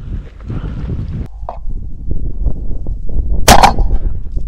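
A single 20-gauge shotgun blast about three and a half seconds in, fired at a duck in flight; it is the loudest sound here. Wind rumbles on the microphone before it.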